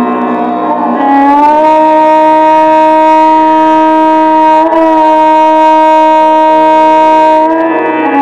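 Violin in Indian classical style playing raga Shyam Kalyan: it slides up into one long bowed note about a second in and holds it for several seconds, with a small ornament midway, moving off the note near the end.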